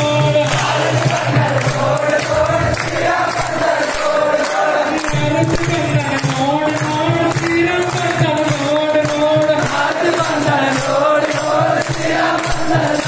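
A crowd of male devotees singing a devotional chant together, with a steady rhythmic beat of clapping and percussion beneath it.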